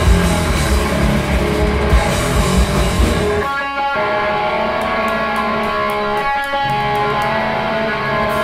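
A crust punk band playing live, with loud distorted electric guitars over bass and drums. About three and a half seconds in, the drums and bass drop out and the guitars carry on alone, with light regular ticks above them.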